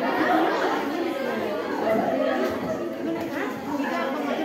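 Many students chattering at once: overlapping voices with no single word clear.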